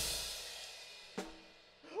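Final crash cymbal hit of a drum and song ending, ringing out and fading away over about a second and a half. A single short hit comes about a second in.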